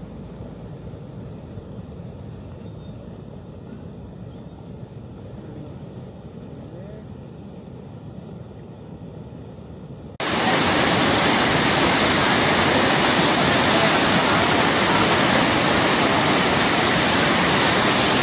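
Floodwater rushing across a submerged road crossing: a fainter, muffled rush for about the first ten seconds, then a sudden jump to a loud, steady rush of turbulent water close by.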